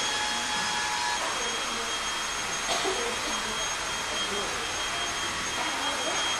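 Steady rushing air noise from a small electric blower motor with a thin high whine, running without a break; low voices murmur underneath.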